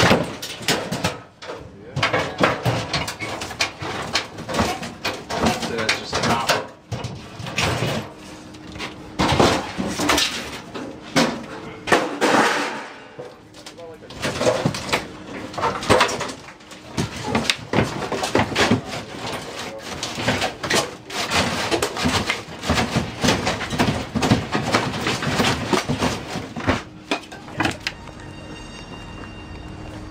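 Demolition work inside a camper: repeated knocks, scrapes and clatter of panels and debris being pulled and shifted, with indistinct voices underneath.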